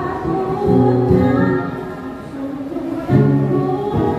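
A woman sings a slow melody into a microphone over the PA, with held notes, accompanied by an acoustic guitar.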